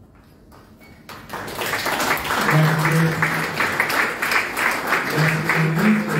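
Audience applauding, starting about a second in and holding steady, with a man's voice heard briefly under it.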